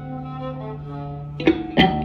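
Live trio music: bowed viola and electric guitar holding sustained notes over a steady low note, with the drum kit coming in with a few sharp hits near the end.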